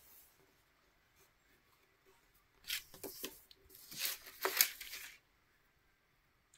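A crayon scratching across paper in several short strokes, starting a few seconds in.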